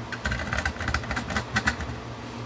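Irregular small clicks and knocks from the microscope stand's height adjustment as the camera is lowered, over a steady low hum.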